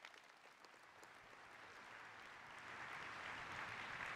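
Large audience applauding, starting faint and building over the first three seconds into steady applause.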